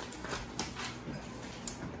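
Felt-tip marker writing on paper: faint, short scratchy squeaks from the pen strokes.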